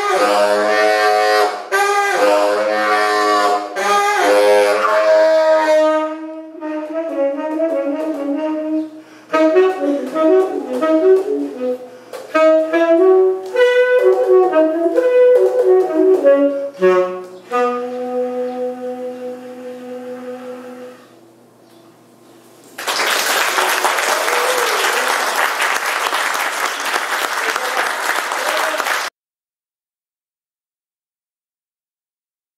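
Solo tenor saxophone improvising in quick runs and jumps, ending on a long low held note that fades away. After a short pause, audience applause, which cuts off suddenly near the end.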